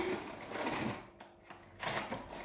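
Rustling and light clatter of items being rummaged through in a bag, in two spells with a short lull about a second in.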